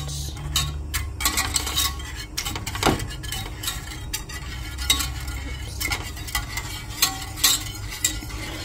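Wire whisk stirring milk in a stainless steel saucepan, scraping and clinking irregularly against the metal sides and bottom, over a low steady hum.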